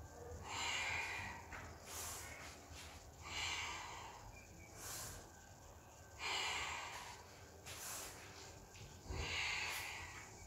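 A woman breathing audibly in and out as she moves through yoga poses: about seven separate breaths, each under a second long, coming roughly every second and a half.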